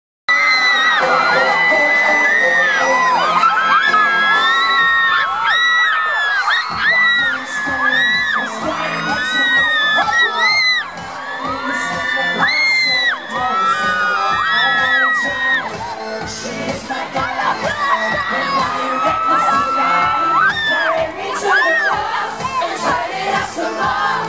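A large crowd of fans screaming and cheering, many high-pitched voices at once, over a live pop song's intro played through the stage PA. Sustained low chords open it, and a steady pulsing beat kicks in about seven seconds in.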